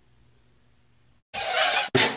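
Faint room tone, then about a second and a quarter in, two loud whooshing bursts of noise back to back, the second ending abruptly: the sound effect of an animated logo sting.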